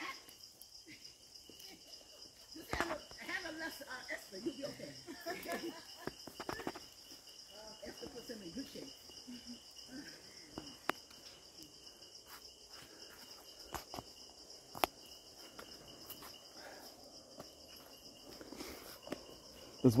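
Forest insects calling in a steady, faint chorus held at two constant high pitches. Faint distant voices come and go, and a few sharp clicks break in.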